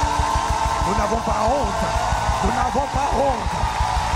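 Live church worship band playing loudly with fast, dense drumming and a held keyboard note, while voices call out and sing over it in short rising-and-falling cries.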